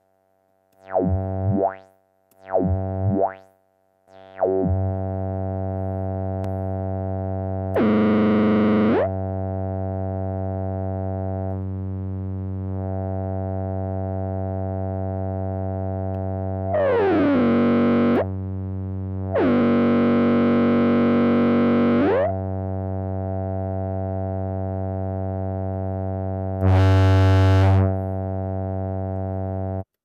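Eurorack synthesizer tone through a Threetom Steve's MS-22 dual filter, its timbre moved by an envelope through the filter's modulation matrix. Three short notes with sweeping overtones open, then a steady buzzy drone sets in that swells louder and brighter four times as the envelope is triggered, once with a falling sweep.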